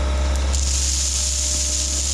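Bobcat T66 compact track loader's diesel engine running with a steady low drone, and from about half a second in a hissing rush of crushed stone pouring out of the tipped bucket onto the gravel pile.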